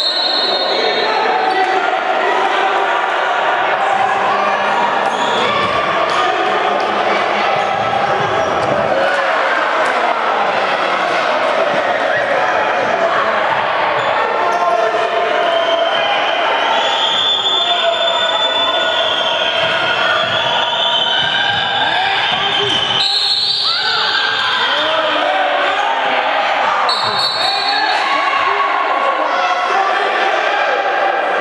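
Handball play in an echoing sports hall: the ball bouncing on the wooden court amid shouting voices, with a short high whistle near the end.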